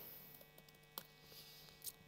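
Near silence: a faint steady electrical hum, with a single short click about a second in.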